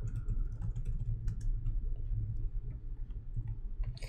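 Computer keyboard typing: a run of soft, scattered keystrokes as a short word is typed, over a steady low hum.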